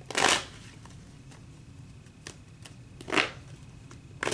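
A tarot deck being shuffled by hand: two short rustling bursts of cards, one at the start and another about three seconds in, with a few faint card ticks between.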